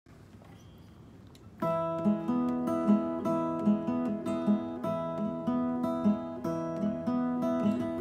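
Solo steel-string acoustic guitar playing a folk song's intro in a steady rhythm, coming in about a second and a half in after a moment of faint room tone.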